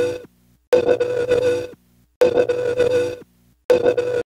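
A pitched tone pulsing on and off, each pulse about a second long with half-second gaps between them.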